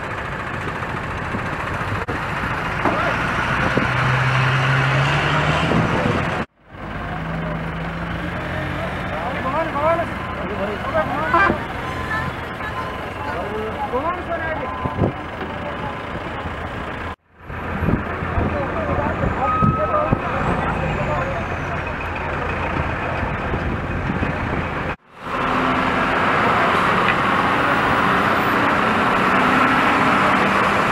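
Truck, car and motorcycle engines running and idling in stopped road traffic, with people talking in the background. The sound breaks off briefly three times.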